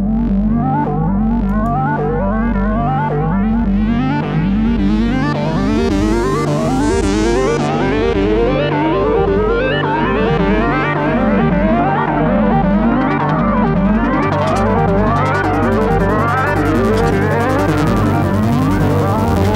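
Layered synthesizer music: several melody lines harmonized in parallel within a custom microtonal scale, their notes sliding and wavering in pitch over a pulsing bass. A lower bass note comes in about fourteen seconds in.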